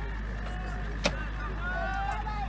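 Distant shouting voices of reenactors in a staged battle, over a steady low rumble, with a single sharp crack about a second in.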